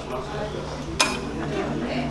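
Room sound in a club between songs: a low steady hum and faint murmur, with one sharp clink about a second in.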